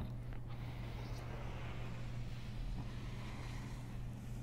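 Steady low hum of room noise, with a faint soft brushing from about a second in as a hand drags across a painted wall in a slow arc.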